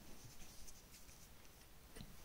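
Near silence: room tone with faint rustling and a few soft ticks.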